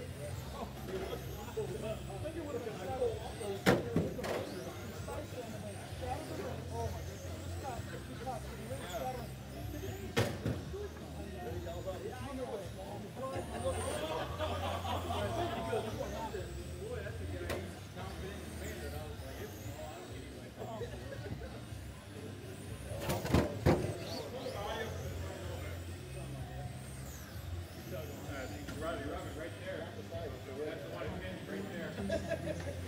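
Electric 1/10-scale RC GT cars racing on an indoor carpet track: faint motor whines sweeping up and down as they accelerate and brake, over a steady background of people talking. Sharp knocks about 4, 10 and 23 seconds in.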